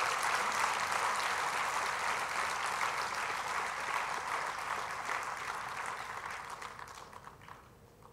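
An audience applauding steadily, the clapping fading away over the last two seconds.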